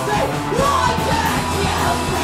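Punk band playing live: distorted electric guitar and held low bass notes, with a singer yelling into the microphone.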